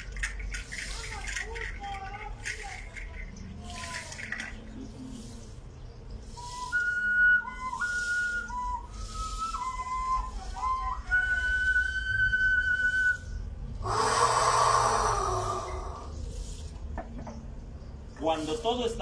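A hand shaker rattled in short repeated shakes as a rain sound effect. Then a small whistle plays a short tune of held notes that step up and down, and a loud rushing hiss lasts about two seconds near the end.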